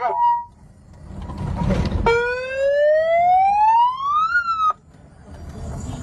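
A siren winds up in one rising wail lasting about two and a half seconds, then cuts off suddenly, over low road rumble.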